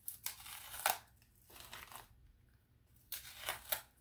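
Light rustling and crinkling as a small potted African violet and its packaging are handled, in a few short bursts with quiet gaps between them.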